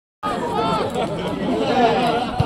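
Several spectators talking at once in overlapping chatter. It starts just after a brief dropout to silence at the very start.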